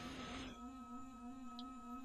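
A faint, steady hum: one low tone with a stack of overtones, wavering slightly in pitch.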